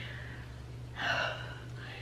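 A woman draws a quick breath about a second in, a short breathy sound without voice. A low steady hum runs underneath.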